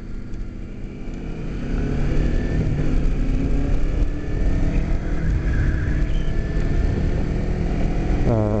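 2008 Kawasaki Ninja 250R's parallel-twin engine pulling the motorcycle up to speed, getting louder over the first two seconds and then running steadily at cruising speed, with wind noise on the microphone.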